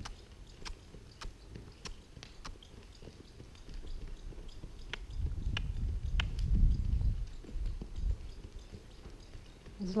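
Miniature donkey trotting on sand: faint hoofbeats and scattered light clicks, with a low rumble around the middle.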